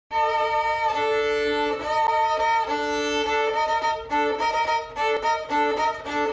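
Music: violins playing a melody of held notes, each lasting up to about a second, the notes growing shorter and more broken in the second half.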